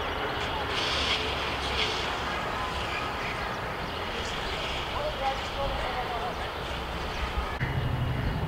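Outdoor street ambience: a steady low rumble of traffic with faint, indistinct distant voices. Near the end a louder low hum sets in.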